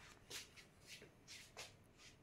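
A cat grooming itself: faint, soft rasping strokes of its tongue over its fur, a few to the second.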